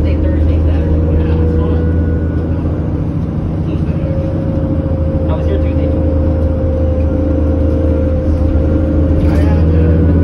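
Cabin sound of a New Flyer C40LF bus under way: its Cummins Westport ISL G natural-gas inline-six engine and Allison B400R automatic transmission give a steady low drone, with a steady higher whine above it.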